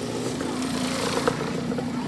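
Dirt bike engine running steadily at low revs as the bike rolls slowly along a dirt track.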